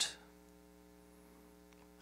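Faint steady electrical mains hum, a buzz made of several even tones, with the end of a spoken word dying away at the start.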